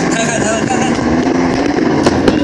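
A box with a child sitting in it being pushed along the floor: a steady scraping rumble of the box sliding.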